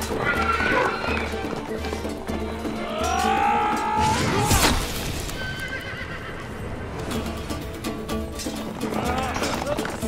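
A horse whinnying, loudest about three to four seconds in, over dramatic music with a steady drone and a low pulsing beat.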